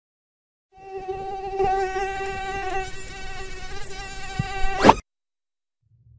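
A mosquito's whining buzz in flight: a steady wingbeat tone with slight wavers, starting about a second in. Just before the fifth second a quick rising sweep ends it, and the sound cuts off suddenly.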